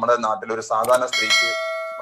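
A bell chime sound effect about a second in: a single struck, bell-like ding with several ringing tones that fades over about a second, the notification-bell sound of a subscribe-button overlay.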